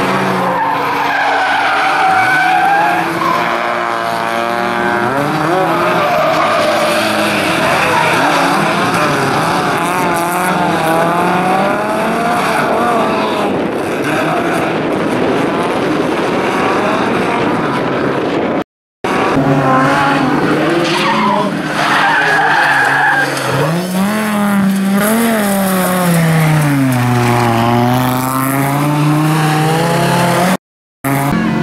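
Bilcross race car engines revving hard, their pitch rising and falling as the cars slide through a corner, with tyres squealing. The sound cuts out for a moment about two-thirds of the way through.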